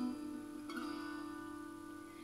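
Quiet guitar accompaniment between sung lines: a chord rings on and fades, and a new chord is plucked about two-thirds of a second in and left to die away. It is played back through a loudspeaker.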